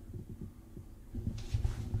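Low, irregular thumps and rumble of movement close to the microphone as the handheld camera is carried and panned, with a breathy hiss in the last half second.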